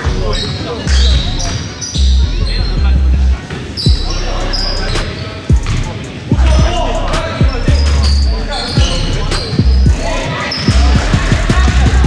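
A basketball bouncing repeatedly on a hardwood gym floor, with sneakers squeaking in short high chirps as players run and cut, in a large echoing gym.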